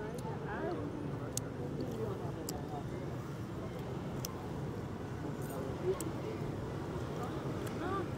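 Busy city street ambience: a steady hum of traffic with faint voices of passers-by talking, and a few light ticks.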